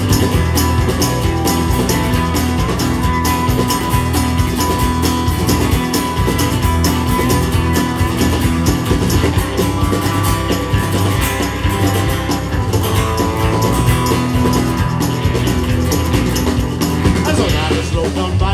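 A live country-rock band playing an instrumental passage: electric and acoustic guitars over a drum kit keeping a steady beat.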